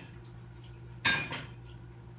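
Two quick, sharp clinks with a brief ringing, like hard dishware or metal being knocked, about a second in, over a steady low hum.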